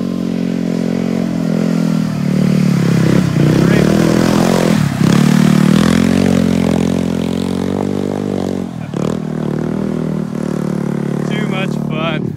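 DTV Shredder's small engine revving as the tracked machine drives through a muddy puddle. The engine note rises and falls with the throttle and is loudest about three to six seconds in, then eases off.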